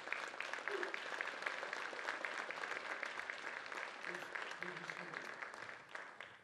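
Audience applauding: dense, steady clapping that begins to die away near the end.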